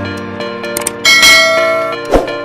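Sound effects of a subscribe-button animation over background music: a couple of small clicks, then a bright bell chime about a second in that rings on and slowly fades.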